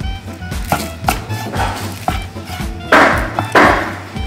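Background music with a steady beat. Over it come light knocks and, about three seconds in, two short scraping rasps of a knife cutting through grilled chicken on a wooden cutting board.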